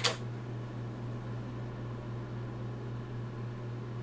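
A doorknob latch clicks right at the start, then a steady low hum with a faint hiss carries on unchanged.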